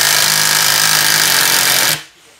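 Hilti SIW 6AT-22 cordless impact wrench hammering steadily as it tightens the nut on an M16 concrete anchor stud. It stops abruptly near the end when the torque control cuts it off at the preset torque.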